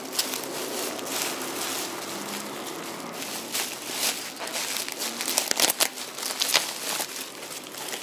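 Bubble wrap and a plastic bag crinkling and rustling as they are handled and pulled open by hand, with a run of sharp crackles, loudest a little past the middle.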